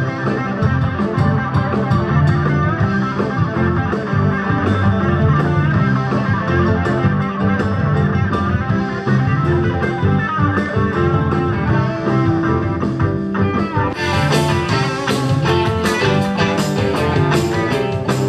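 Live rock band playing: electric guitars, bass guitar, keyboard and drum kit, with a steady drum beat. About four seconds before the end the cymbals come in much brighter and louder.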